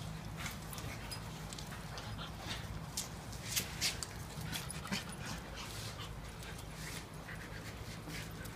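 A husky and a small Maltese-Shih Tzu play-wrestling: scuffling with scattered short, sharp clicks and rustles, the loudest about three and a half to four seconds in, over a steady low hum.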